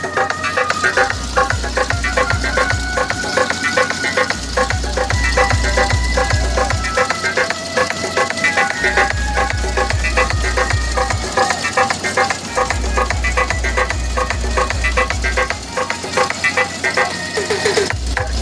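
Loud music with a deep bass beat. The beat comes in runs of a few seconds and drops out for a second or two between runs, while a melody carries on above it.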